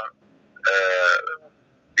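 Speech only: a man's drawn-out hesitation "ee" over a phone line, held for under a second, then a pause.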